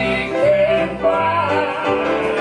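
A woman singing a southern gospel song to her own grand piano accompaniment, her held notes wavering and gliding in pitch over sustained bass notes.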